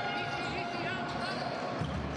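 Basketball game sound on an indoor hardwood court: a ball being dribbled during live play, with a few short high squeaks about a second in.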